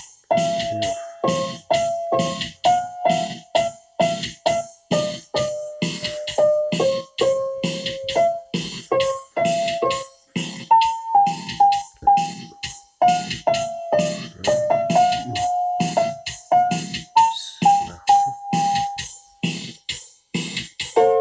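Casio Tone Bank electronic keyboard playing a march: a simple one-note melody over a steady built-in drum rhythm of about two beats a second. It is the keyboard playing back a part programmed into it.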